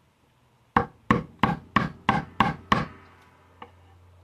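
A chisel being tapped into a poplar bass body, seven quick strikes about three a second starting under a second in, with a faint eighth near the end. The chisel is scoring down along the outline of the neck pocket.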